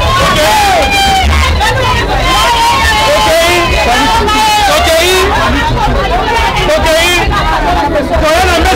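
Loud crowd hubbub: many voices talking and calling out over one another without a break.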